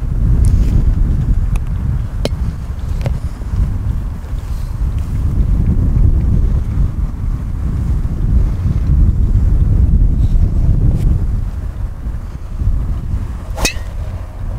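Wind buffeting the microphone as a steady low rumble, with a few faint ticks. Just before the end, a single sharp crack: a golf driver striking the ball off the tee.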